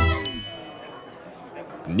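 A bright, high ding, a chime that rings on and fades away over about a second as the music's last notes die out.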